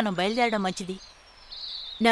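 Dubbed dialogue: a voice speaks for about the first half, then breaks off. In the pause, faint bird chirps are heard in the background.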